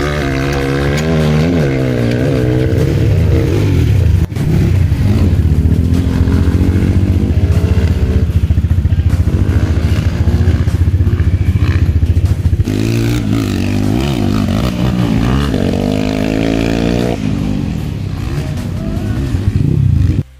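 Dirt bike engines revving, their pitch climbing and falling repeatedly, then settling into a steady lower drone for several seconds before revving up and down again.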